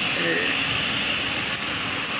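Steady rushing background noise with no distinct events, with a brief faint voice about a quarter second in.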